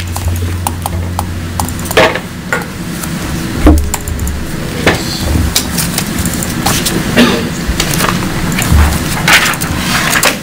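Handling noise at a meeting table: papers shuffled and a series of knocks and clicks on the tabletop and its microphones, with a few short low thuds as a microphone is bumped.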